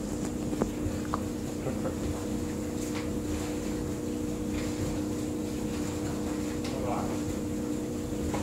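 A steady low hum holding a few fixed pitches, with a faint high whine, a few faint clicks and a brief faint voice about seven seconds in.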